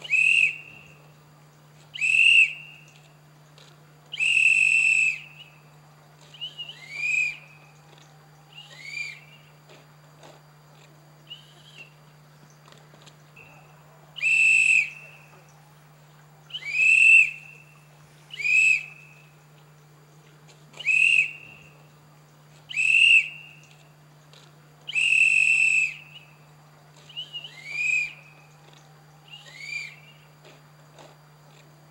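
Loud, high-pitched whistle-like calls repeated about every two seconds, several of them dropping in pitch at the end, with a pause of a few seconds midway, over a steady low hum.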